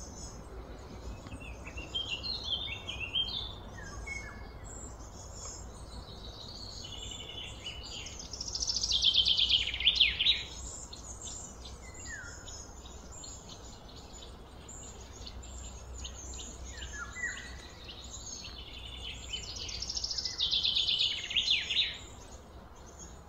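Birds singing in repeated high chirping phrases, loudest about eight to ten seconds in and again near the end, with a few short falling whistles between, over a steady low background rumble.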